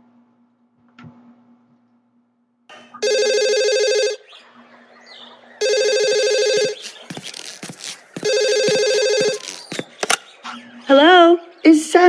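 Electronic telephone ringing three times, each ring about a second long with gaps of about one and a half seconds. A few clicks follow, and a voice starts speaking near the end.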